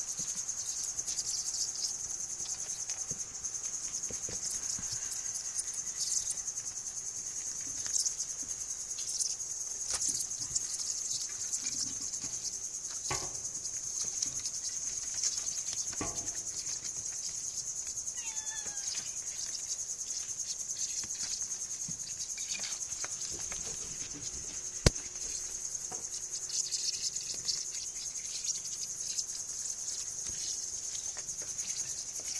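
Insects trilling steadily at a high pitch, with scattered scuffles of kittens playing and one sharp click about three-quarters of the way in.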